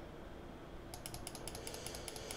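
A fast run of small, faint clicks from a computer's input device, about ten a second, starting about a second in.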